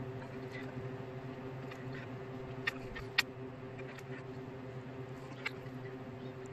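A steady hum with several fixed tones, and a few light clicks, two close together about halfway through and one more near the end, as a fine paintbrush and a small plastic model part are handled over a plastic paint palette.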